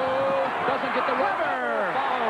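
Broadcast commentator's voice making drawn-out exclamations, with a held note early on and falling calls near the end, over steady arena crowd noise.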